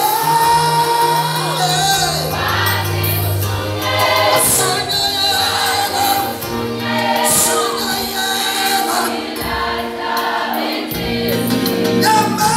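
Gospel choir singing together in sustained, held notes, mostly women's voices, with a male lead singing into a handheld microphone.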